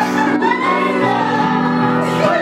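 A group of people singing together, reading the words off sheets, over backing music with steady low notes; the voices hold long, gliding notes.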